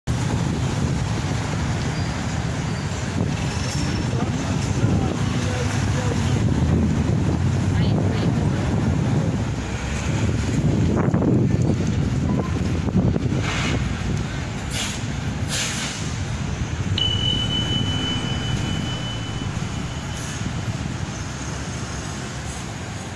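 City street sound: a steady low traffic rumble with people's voices in the background. Several short hisses come in the middle, and a single high steady tone sounds for about three seconds near the end.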